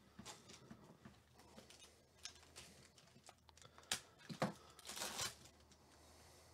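Shiny foil trading-card pack wrapper crinkling as it is handled and torn open, a string of small crackles with the loudest tearing crinkle about four to five seconds in.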